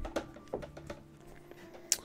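Faint background music with a few light taps and clicks as a plastic graded-card slab is handled in gloved hands, with one sharp click near the end.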